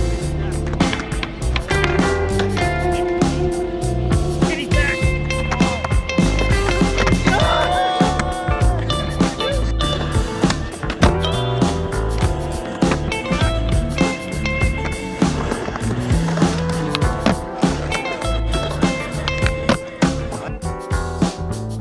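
Music playing over the rumble of skateboard wheels rolling on a concrete skatepark, with sharp clicks and knocks throughout.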